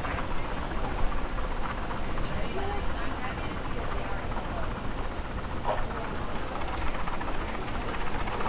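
Steady low outdoor noise, with scattered voices of people talking and a few faint clicks.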